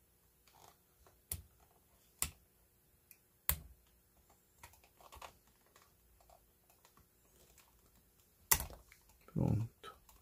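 Small metal pick clicking and scraping against the plastic slide-switch tab on the side of an Aiwa HS-RX650 personal cassette player as the tab is worked loose. There are four sharp clicks with faint ticking between them, the loudest near the end.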